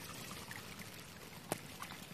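Muddy water pouring and trickling down a dirt bank into a puddle, with one sharp click about one and a half seconds in.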